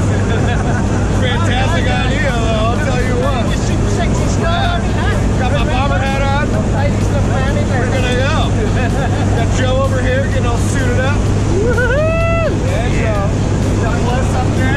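Steady drone of the jump plane's engine and propeller heard inside the cabin during the climb, with voices talking over it and one long, loud call near the end.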